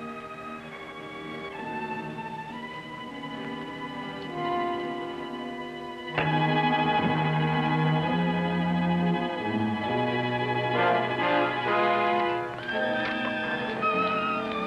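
Orchestral film score led by strings, playing held chords that change every second or two. It comes in much louder about six seconds in.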